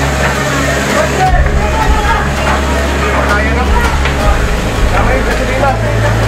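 People's voices talking and calling out, over a steady low engine-like rumble.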